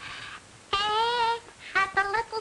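A high, childlike voice starts singing. Faint breath first, then a long held note with vibrato about 0.7 s in, then short sung notes near the end.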